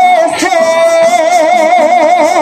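A woman singing a Spanish Pentecostal worship song into a microphone, holding one long note with vibrato, with a live band's percussion behind her.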